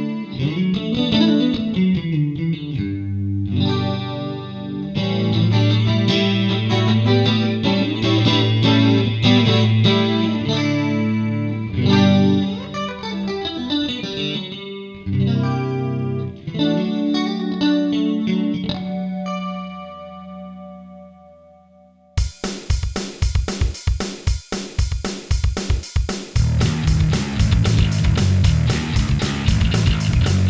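Electric guitar played through a Korg Pandora Stomp multi-effects pedal, with the last chord ringing out and fading about two-thirds of the way through. An electric bass then starts suddenly through the same pedal, playing a riff over a drum-machine beat.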